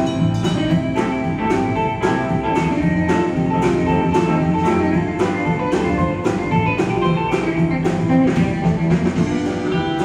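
Live country band playing an instrumental passage, electric guitar over electric bass and a drum kit keeping a steady beat.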